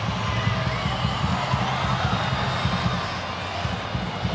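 Football stadium crowd noise from a packed stand: a steady hum of many voices, with no single shout standing out.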